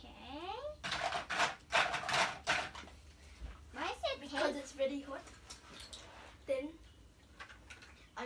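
Children's voices: a rising vocal sound, breathy bursts and short unclear vocal sounds, with no clear words.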